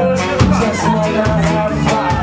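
Live ska band playing: saxophone and trumpet holding sustained notes over electric guitar, bass and a steady drum beat of about four hits a second.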